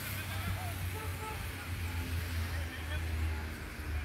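Distant voices of players shouting and calling across a football pitch, over a steady low rumble.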